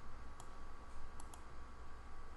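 Computer mouse clicks: one click about half a second in and a quick pair about a second later, over a faint steady hum.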